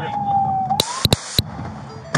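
Police siren wailing: its pitch falls, starts to rise again partway through, then drops out. A short burst of radio static, opened and closed by clicks, comes near the middle.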